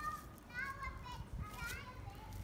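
Faint, high-pitched calls of children's voices in the background, several short rising and falling cries, over a low outdoor rumble.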